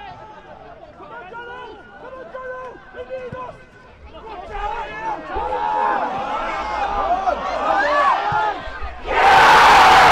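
Voices shouting at a football match as an attack builds, growing louder through the move. About nine seconds in comes a sudden loud cheer from a small crowd as the goal goes in.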